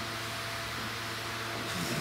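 Steady room tone: a low, constant hum under an even hiss.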